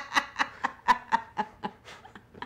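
People laughing: a run of short ha-ha pulses, about four a second, trailing off near the end.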